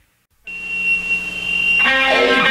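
Brief silence between tracks of a punk rock album. About half a second in, the next song opens with a steady high-pitched tone over a low drone, and the full band with electric guitars comes in near the end.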